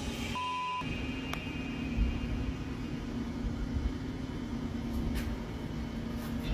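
A steady low hum with an uneven rumble beneath it. A short, high, pure beep comes about half a second in.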